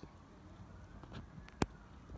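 Faint background noise with a single sharp click about one and a half seconds in.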